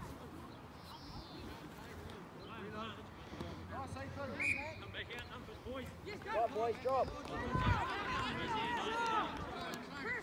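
Several distant voices shouting and calling across a rugby field, overlapping each other and growing louder and busier in the second half.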